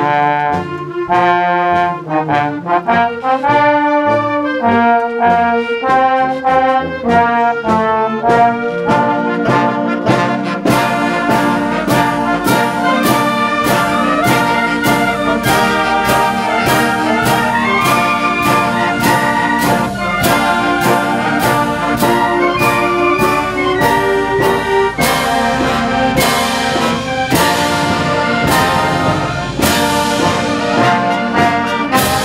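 Concert band of brass and woodwinds playing a piece with a steady beat; about ten seconds in the full band comes in and the sound grows fuller and brighter.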